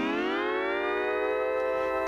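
Hawaiian lap steel guitar glissando: the bar slides a note smoothly up in pitch over about a second and a half, then the note holds and rings.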